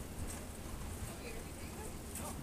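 Steady low rumble of city street background, with faint distant voices talking in the second half.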